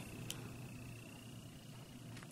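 Quiet indoor room tone with a faint steady high-pitched whine and one light click about a third of a second in; no clear fizzing stands out.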